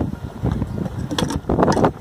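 Wind buffeting the microphone in a steady low rumble, with a few sharp clicks a little over a second in.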